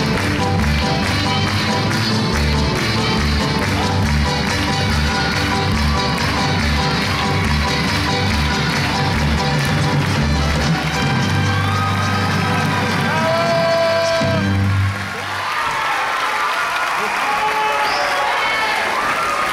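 Upbeat dance music with a steady bass beat that ends about fifteen seconds in, followed by audience applause and cheering.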